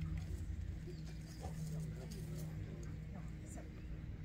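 Faint, indistinct voices over a low steady hum and low rumble.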